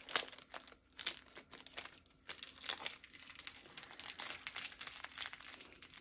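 Crinkling and crackling of a perfume sample's wrapping handled between the fingers: a run of irregular quick crinkles.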